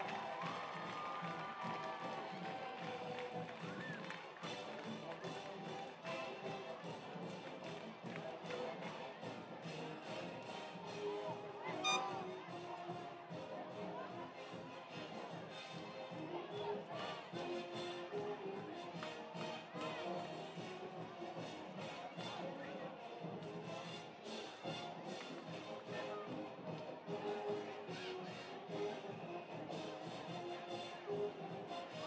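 Music playing over the background chatter of a stadium crowd, with one sharp click about twelve seconds in.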